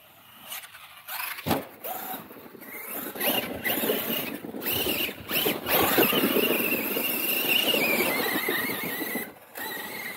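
Brushless electric RC monster truck driving hard on snow: a high motor whine that cuts out briefly several times, rises in pitch to its loudest as the truck passes close with its tyres churning snow, then falls away.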